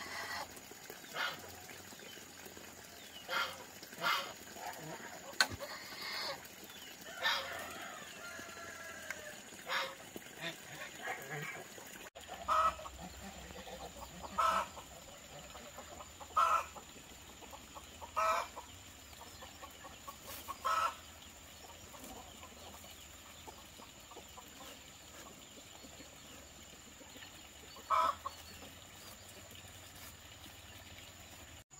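Chickens clucking in short calls, a run of single clucks about every two seconds in the middle and another near the end, with a longer, gliding call earlier on.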